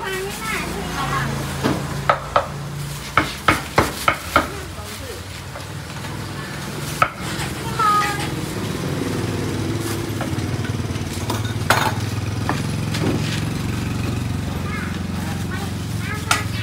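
Cleaver chopping pork on a round wooden chopping block: a quick series of sharp chops in the first few seconds, then fewer strikes over a steady low hum and background chatter.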